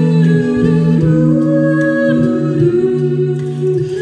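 A mixed-voice a cappella group of six singing a slow song in held chords, with the backing voices humming sustained notes beneath the melody. The chords change every second or so.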